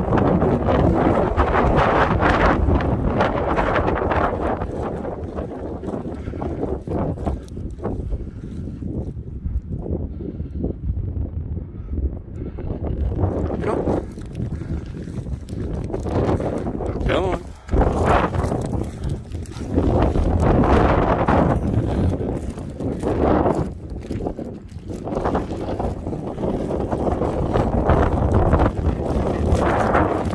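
Wind buffeting a handheld phone microphone outdoors, with footsteps and rustling through dry stubble. The noise swells and dips unevenly throughout.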